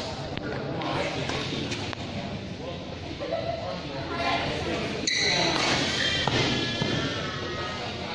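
People talking and calling in a large badminton hall, with a few sharp knocks on and around the court, the clearest about five seconds in.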